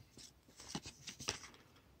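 Faint rustling and a few soft ticks of baseball trading cards being slid off a stack one after another in the hands.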